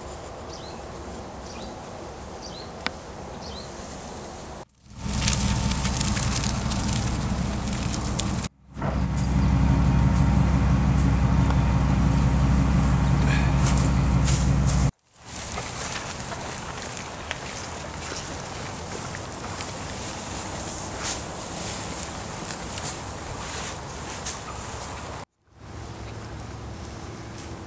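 A pickup truck's engine running steadily through the middle of the stretch, the loudest sound, between cuts of quieter outdoor ambience with wind noise and scattered small clicks.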